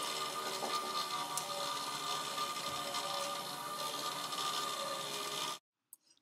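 Small battery-powered electric motor running steadily, driving a spool that carries a moving loop of rope, with a steady whir and light rubbing and rattling of the rope. The sound cuts off abruptly shortly before the end.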